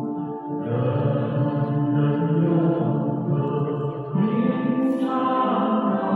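Slow Buddhist devotional song with chant-like sung vocals and long held notes; a new phrase begins on a higher note about four seconds in.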